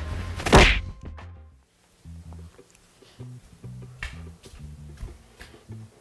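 One heavy thunk about half a second in, then background music with a low, stepping bass line starting about two seconds in.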